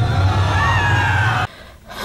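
Underwater ambience: a deep steady rumble with slow gliding high tones drifting over it, cutting off abruptly about one and a half seconds in.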